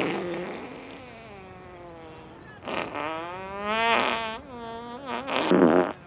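A talking doll's recorded laugh, drawn out over several seconds, with a wavering pitch that grows louder past the middle.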